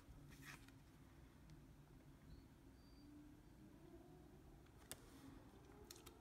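Near silence: room tone with a faint hum, and a faint tick or two of paper tarot cards being handled, the clearest about five seconds in.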